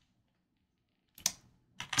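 Computer keyboard keystrokes, a ticker being typed into charting software: one sharp key click a little over a second in and a fainter one near the end.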